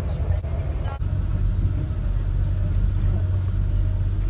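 Steady low rumble of a diesel passenger train running along the line, heard from inside the carriage, with a faint click about a second in.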